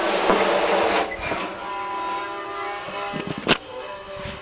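Scuffling and scraping of people crawling in a concrete pipe, then a steady droning sound of several held tones, broken near the end by one sharp knock.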